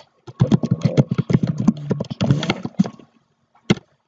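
Typing on a computer keyboard: a quick, uneven run of key clicks lasting about two and a half seconds, then a single click near the end.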